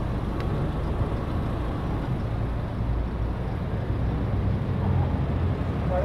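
Low, steady rumble of street traffic, swelling a little in the middle.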